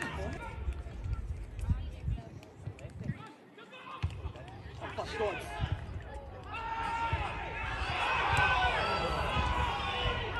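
Overlapping voices of players and spectators at a football match. They are faint at first and grow into a louder, busier babble from about six and a half seconds in, over a low rumble that drops out for a moment around three seconds in.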